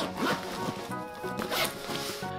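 Zipper on a fabric Jujube diaper bag being pulled along its track, in a few quick rasping runs; the longest and loudest comes about one and a half seconds in. Background music plays underneath.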